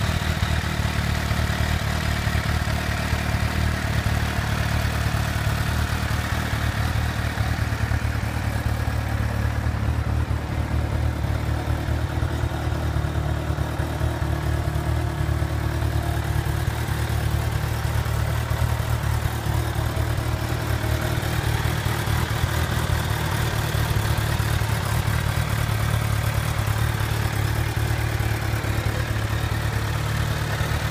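2016 Kawasaki Ninja H2's supercharged inline-four engine, fitted with an Akrapovic exhaust, idling steadily without revving.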